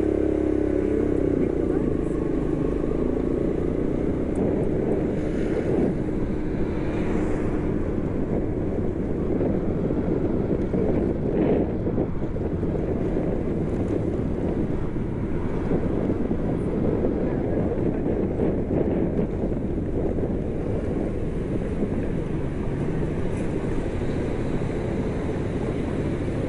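Motorbike engine running while riding, mixed with steady wind rumble on the bike-mounted camera's microphone.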